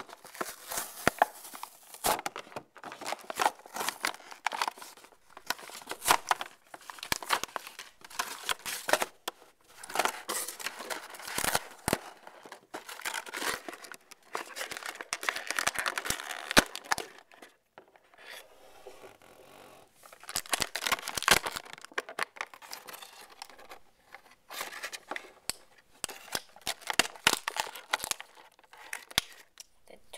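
Clear plastic blister packaging being crinkled, torn and handled: irregular bursts of crackling and rustling, with a quieter stretch about two-thirds of the way through.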